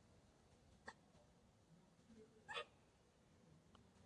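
Near silence broken by a few faint, short wet smacks, a small one about a second in and a louder one midway, as a young macaque bites and sucks at a ripe mango.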